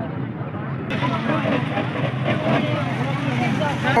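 People talking in the background over a steady low hum, with no clear words, louder and fuller after a cut about a second in.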